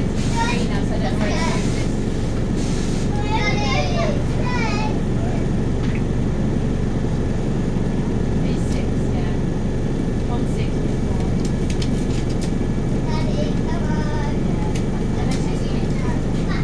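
Volvo B5TL bus's four-cylinder diesel engine idling steadily while the bus stands still, heard from inside the passenger saloon. Voices of passengers chatter faintly in the first few seconds and again near the end.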